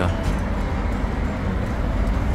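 Steady background noise of road traffic outdoors, a low rumble without distinct events.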